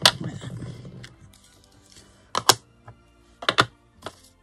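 Sharp taps and clicks of a clear acrylic stamp block and ink pad being handled and set down on a craft cutting mat: one at the start, one about two and a half seconds in, and a quick double click about a second later.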